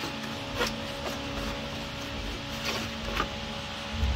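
Steady low machine hum with a few light knocks and rattles of the plastic radiator fan shroud as it is worked loose and lifted out.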